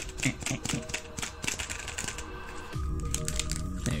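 Rapid clicking and crackling of a metal collector tin and its clear plastic wrapping being handled and pulled open, over background music. The clicking thins out about three seconds in.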